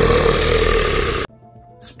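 A loud, rough blast of a sound effect that cuts off suddenly a little over a second in.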